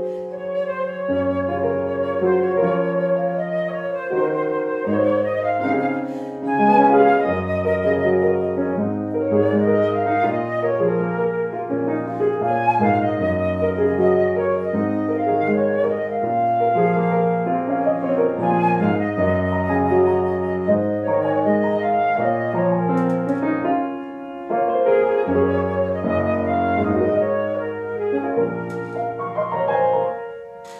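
Concert flute playing a slow, lyrical melody over grand piano accompaniment, with a short break in the sound about four-fifths of the way through.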